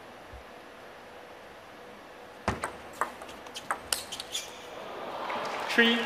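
Plastic table tennis ball played in a short rally: a quick run of about half a dozen sharp clicks as it is struck by the rackets and bounces on the table over about two seconds. A crowd starts to applaud near the end.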